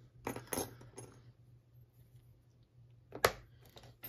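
Metal keys clinking as they are handled and set down on the bench mat: a few light clicks about half a second in, then one sharp metallic clink a little after three seconds.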